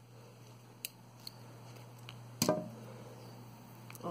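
A few small clicks of pearl beads and a needle being handled while nylon thread is worked through a beaded flip-flop strap. One louder tap comes a little past the middle, over a steady low hum.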